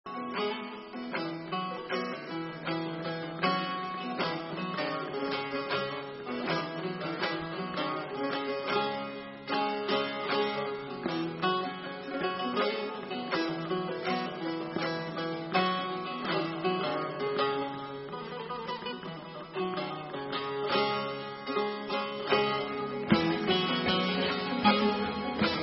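An ensemble of bağlamas (Turkish long-necked folk lutes) playing an instrumental introduction, a dense stream of plucked notes.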